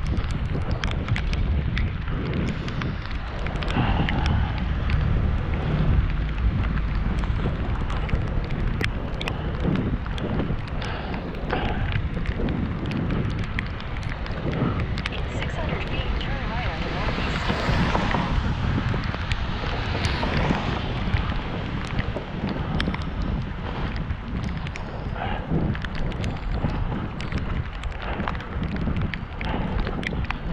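Wind rushing on the microphone of a camera riding on a bicycle along a wet street. About halfway through, a passing car's tyre hiss on the wet road swells and fades over several seconds.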